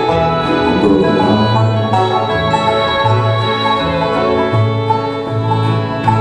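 Live bluegrass band playing an instrumental passage: banjo and fiddle over acoustic guitar, mandolin and upright bass. A loud chord lands right at the end.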